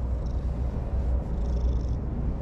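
Orange-and-white cat purring steadily while its head is stroked, close to the microphone.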